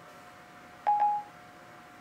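Siri's short electronic chime on an iPad mini, one beep about a second in, marking that Siri has stopped listening and is processing the spoken request. A faint steady tone runs beneath it.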